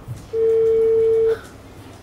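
Mobile phone on speakerphone playing a ringback tone: a single steady one-second beep, the signal that the called phone is ringing at the other end.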